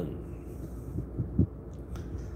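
Low steady machinery hum with a faint regular throb, and three soft low thumps in quick succession about a second in, the last the loudest.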